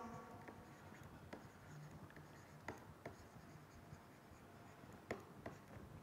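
Faint taps and light scrape of a stylus writing on a tablet, with about five soft clicks spread across the seconds against near silence.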